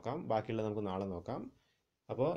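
A man speaking in lecture narration, his speech stopping about one and a half seconds in.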